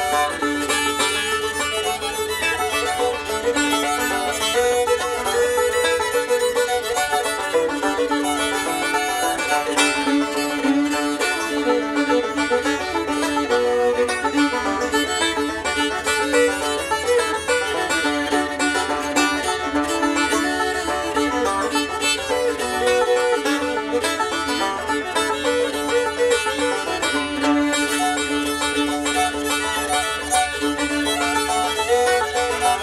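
Fiddle and five-string-style banjo playing an old-time tune together: the bowed fiddle carries the melody over the plucked banjo, without a break.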